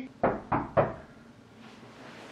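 Three quick knocks or thumps about a third of a second apart, each dying away quickly.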